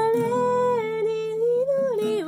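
A woman's voice singing one long held note over a soft acoustic guitar accompaniment. The note rises a little and then falls away near the end.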